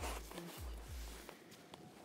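Soft low thumps and rustling from a handheld phone as its holder steps back over dry grass, with a faint voice heard briefly.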